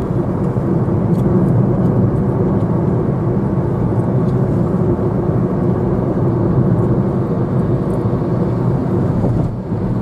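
Steady drone of a moving car heard from inside its cabin, engine and tyre noise with most of the sound low down. It drops briefly near the end.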